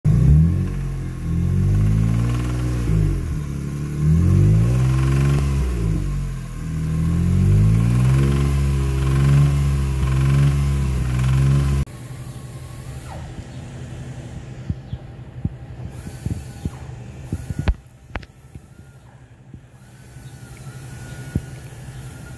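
A car engine is revved up and down again and again. The owner diagnoses rod knock and finds metal flakes in the oil. About twelve seconds in the engine sound cuts off, leaving a much quieter background with scattered clicks.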